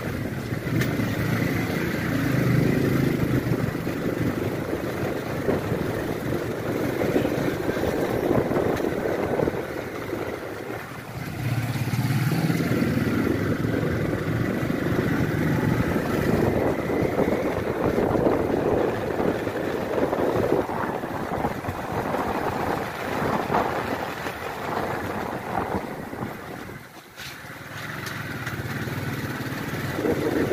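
A small motorcycle's engine running as the bike is ridden at low speed. The engine sound drops away briefly twice, about a third of the way in and again near the end.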